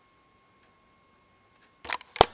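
Camera handling noise: a faint steady high whine, then near the end a brief loud rustling clatter as the camera is touched, consistent with the recording being stopped.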